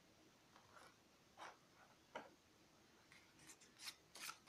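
Near silence, broken by a few faint rustles and taps of a tarot deck being handled, a little more frequent near the end.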